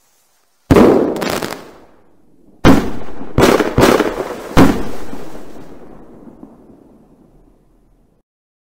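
Aerial firework shells bursting. A loud bang comes about a second in with a short crackle after it, then a quick cluster of four bangs follows from about two and a half to four and a half seconds in. The sound dies away slowly over the next few seconds.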